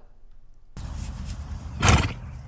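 Outdoor background noise with a low rumble that starts abruptly about three quarters of a second in, with a short, louder burst of noise near the end.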